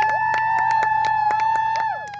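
Spectators cheering with long held whoops over clapping, several voices joining in one after another.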